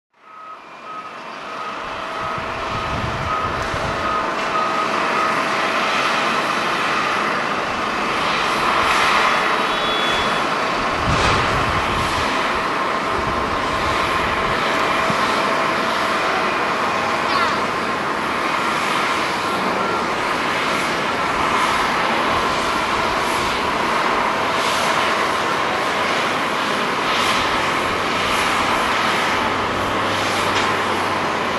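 Jet engines of an ANA Boeing 737-800 landing and rolling out on the runway: a steady rush of jet noise with a faint high whine.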